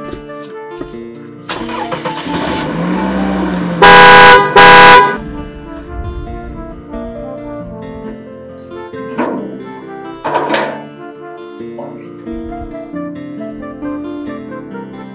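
A car horn honked twice, two short, very loud blasts about half a second apart, over background music.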